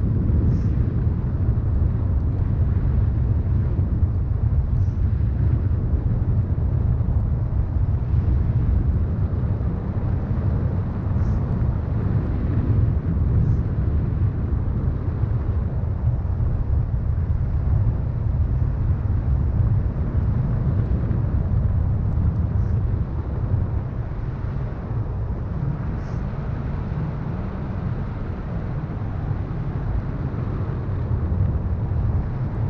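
Wind buffeting the microphone of a handheld camera in flight on a tandem paraglider: a steady, deep rush of wind noise.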